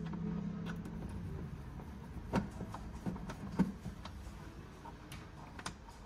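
Screwdriver undoing a screw in a plastic wiring-box cover: a few small, scattered clicks and ticks of tool on screw and casing. A low hum fades out in the first second.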